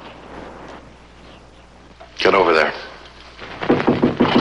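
Short spoken lines from a voice in a 1950s TV drama soundtrack: one phrase about two seconds in and another starting near the end, over a faint, steady hiss in between.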